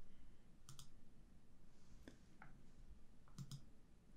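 Faint computer mouse clicks: a pair under a second in, two single clicks around the middle, and another pair near the end.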